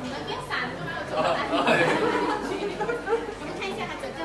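Overlapping chatter of a group of people talking at once in a room, with no single clear voice, getting louder in the middle.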